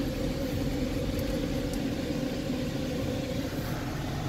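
Supercharged 3.0 TFSI V6 of a 2015 Audi S5 idling, heard from inside the cabin as a steady, even hum.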